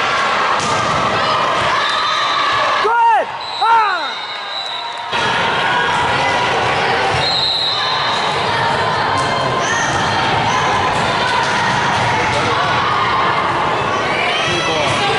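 Indoor volleyball rally in a gym: steady crowd and player chatter with the thuds of the ball being played. Two short rising-and-falling shouts come about three seconds in.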